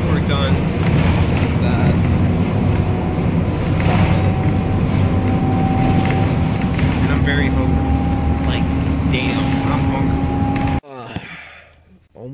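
City bus running, heard super loud from inside the passenger cabin: a steady low rumble with a high whine that comes in about four seconds in and holds. It cuts off suddenly near the end.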